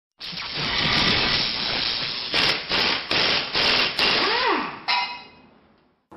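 Logo intro sound effects: a long rush of noise, then five sharp metallic hits about every 0.4 s, a short tone that rises and falls, and a final hit that rings out and fades away.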